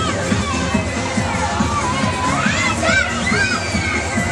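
Riders on a spinning chain swing carousel shrieking and shouting, with long high gliding screams in the second half, over loud fairground music with a steady bass beat.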